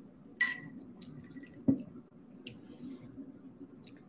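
Sipping juice through a metal straw from a glass, with small mouth clicks and a sharper knock a little before halfway, over the steady low hum of a ceiling fan.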